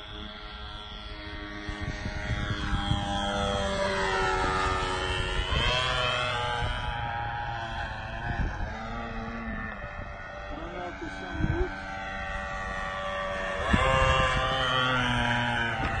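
O.S. Max .50 glow engine of a radio-controlled Extra 300S model plane buzzing in flight, its pitch sweeping up and then down as the plane passes by, twice. The flyers think the engine was running too lean.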